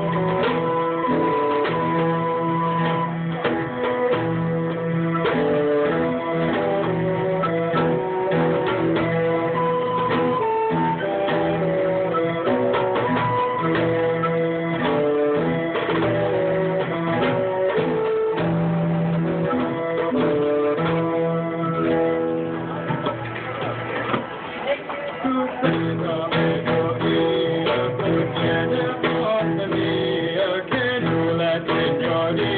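Early-music ensemble playing a medieval song arrangement: recorders and bassoon holding melodic lines over harpsichord and hand drum. The texture thins briefly a little past the middle, then the full ensemble resumes.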